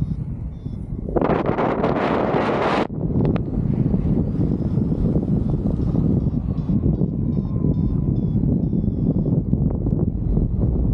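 Airflow rushing over the camera microphone in flight under a paraglider wing, steady and low, with a much louder, brighter gust about a second in that lasts about a second and a half. Faint series of short, high beeps come and go later on.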